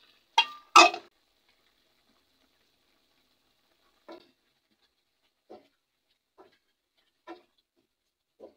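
Two loud clatters, about half a second apart, as diced carrots and potatoes are tipped from a bowl into a pot. Then four soft knocks of a cooking spoon against the pot, roughly one a second, as the mixture is stirred.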